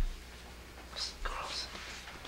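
A person whispering briefly about a second in, the breathy hiss of it carrying little voice. A short low thump right at the start.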